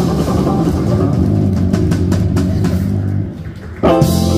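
Live instrumental band of electric guitar, keyboard, electric bass and drum kit playing a smooth-jazz/neo-soul tune. About three seconds in the music briefly drops back, then the band comes back in with a loud hit just before the end.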